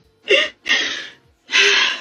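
A woman sobbing in three short, gasping breaths, the first with a little voice in it.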